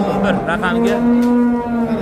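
Cattle mooing: one long, steady moo that starts about half a second in and holds for well over a second.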